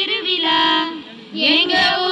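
A group of women singing a Tamil folk song together, breaking off briefly about halfway through before the next line.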